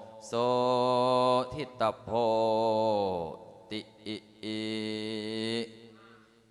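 A Buddhist monk's male voice chanting Pali in long, drawn-out held notes. There are three sustained tones with short breaks between them, and the second falls in pitch as it ends.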